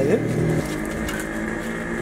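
An engine running with a steady, even hum that slowly fades.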